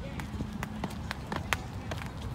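Double-dutch jump ropes slapping the ground as they are turned, with the jumper's sneakers landing between them: sharp clicks a few times a second in an uneven rhythm, over low background rumble.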